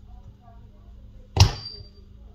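A single sharp snap with a brief high metallic ring, made as the iPhone SE's screen is pried up with a suction cup and a thin steel pry blade.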